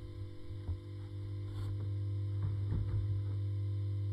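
Steady mains hum from a vintage bass amplifier left on with nothing playing through it, with a few faint knocks.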